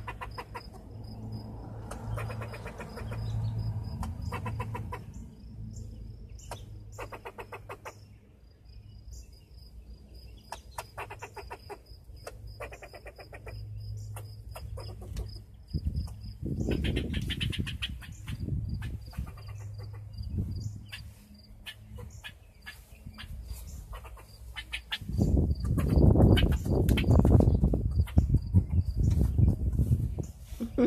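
Short bursts of rapid clucking chatter, repeating on and off, over a steady high pulsing trill. Loud rumble of wind or handling on the microphone near the end.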